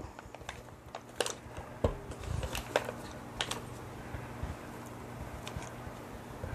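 Spatula scraping butter-flavored Crisco shortening off its wrapper into a stainless steel mixing bowl: scattered light clicks and taps of the spatula against the bowl and wrapper, over a faint low hum.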